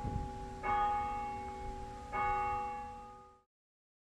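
A church bell tolling: two strokes about a second and a half apart, each ringing on with several clear tones, the first over the ringing of a stroke just before. The sound cuts off suddenly near the end.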